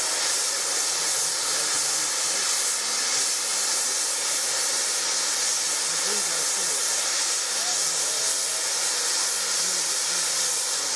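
Safety valves of the stationary Jubilee class steam locomotive 45690 'Leander' blowing off: a steady, loud hiss of escaping steam, the sign of a boiler at full pressure.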